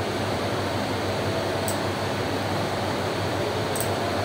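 Steady fan hum with a low drone, with two faint clicks, one near the middle and one near the end.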